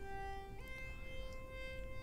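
Software synthesizer lead patch ('Funk Lead') playing back two held notes, stepping up to the higher note about half a second in.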